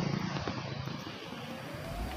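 A motor vehicle's engine running among outdoor traffic noise, then beginning to rise in pitch near the end as it accelerates.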